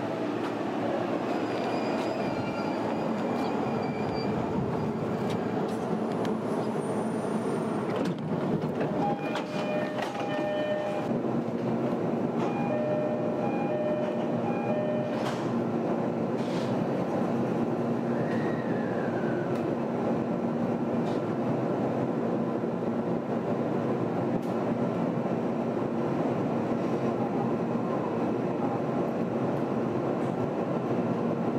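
JR East E531 series electric train standing at a station platform and then pulling away, with a steady hum from its running equipment. A sharp knock comes about eight seconds in.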